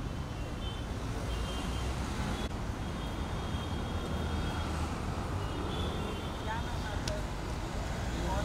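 Steady outdoor street noise: a low rumble of road traffic with faint, indistinct voices in the background.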